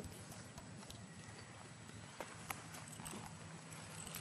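A horse's hooves clip-clopping faintly as a stallion is led at a walk, a few sparse hoof strikes.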